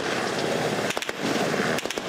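Dense crackle of simultaneous gunfire from many weapons, a barrage of overlapping shots, with a few sharper cracks standing out about halfway through and near the end.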